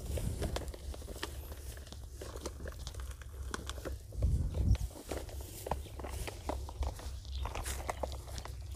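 Crinkling of a polythene nursery bag and crunching of soil as a moringa sapling is set into a planting pit and soil is pressed around it, a run of small irregular clicks and rustles. A louder low rumble comes about four seconds in.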